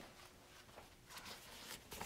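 Near silence: small-room tone, with a few faint, short rustles of paper sheets being handled in the second half.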